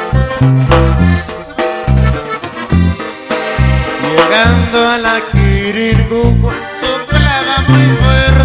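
Norteño corrido instrumental break: an accordion plays a melodic run over a steady, bouncing bass rhythm.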